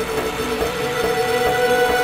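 Psytrance intro: a sustained synth drone of steady held tones over a dense, noisy texture, slowly rising in level.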